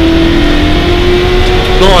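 1973 Ford Mustang Mach 1's V8 engine heard from inside the cabin, pulling hard at steady high revs with a note that rises slowly under acceleration, over a low road rumble.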